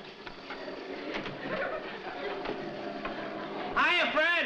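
Upright vacuum cleaner motor running with a steady hum. A loud voice breaks in just before the end.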